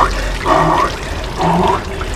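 Ice water running and dripping off a drenched person, with short gasping breaths about once a second from the cold shock.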